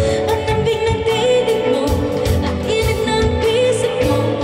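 A woman singing live into a handheld microphone, holding long notes with vibrato, over a band with bass and drums keeping a steady beat.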